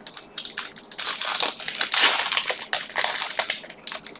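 Foil wrapper of a Pokémon booster pack crinkling and crackling in the hands as it is worked and pulled open, busiest about halfway through.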